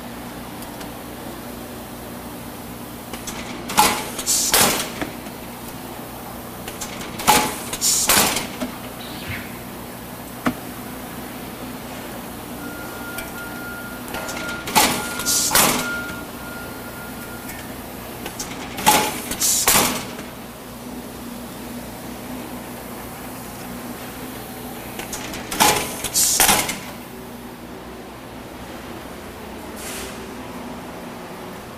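Automated Packaging H-100 semi-automatic bag sealer cycling bag after bag: five times, a pair of loud sudden mechanical bursts under a second apart, over a steady low hum.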